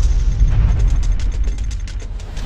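Sound design for an animated logo intro: a deep bass rumble with a rapid mechanical ratcheting click that starts about half a second in.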